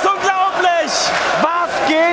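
A man's excited shouting, a wrestling commentator calling the action, over a cheering arena crowd.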